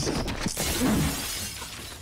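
A pane of glass shattering in a heavy crash, with a second impact about half a second in. The shards scatter and die away within about a second and a half.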